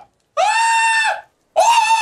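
A man screaming in a high falsetto, in short wails each held at a steady pitch for under a second: one in the middle and another starting near the end, with short gaps between.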